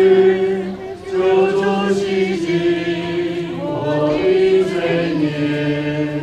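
A group of voices singing a slow hymn together in long held notes.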